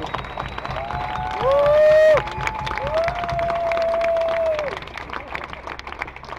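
Outdoor crowd applauding, with two long held calls over the clapping: a short one about a second and a half in, the loudest moment, and a steadier one from about three seconds in lasting nearly two seconds. The clapping thins out near the end.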